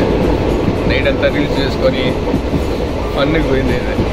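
Steady low rumble of a moving vehicle heard from inside, with people's voices over it.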